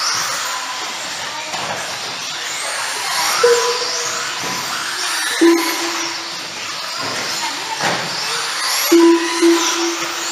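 Electric 4wd RC buggies racing, their motors whining up and down in pitch as they accelerate and brake. A few short steady tones sound about three and a half seconds in, midway and near the end, and they are the loudest moments.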